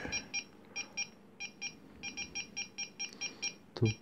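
Small electronic buzzer on an Arduino altimeter's receiver beeping in short, quick high-pitched chirps, several a second in uneven runs with brief gaps. It is the battery indicator warning of low supply voltage, which should stop once a 5 V supply is connected.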